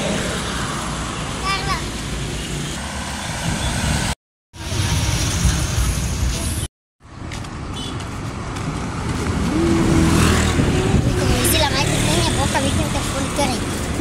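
Street traffic: cars and motorbikes driving past with steady engine and tyre noise, and people's voices in the background. The sound cuts out completely twice, briefly, about four and seven seconds in.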